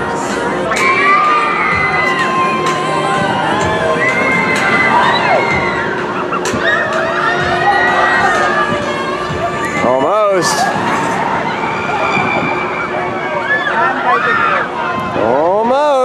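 Riders screaming and shouting on a giant swinging pendulum ride: many high, wavering cries over the noise of a crowd.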